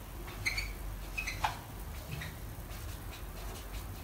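Marker pen squeaking on a whiteboard in several short strokes as letters are written, over a low steady hum.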